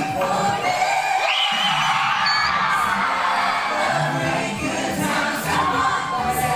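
Live a cappella vocal group singing a medley, several voices in harmony, with a crowd cheering.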